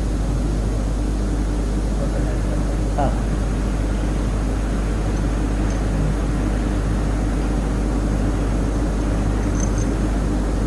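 A steady low hum with background noise in the recording of a talk, unchanging throughout.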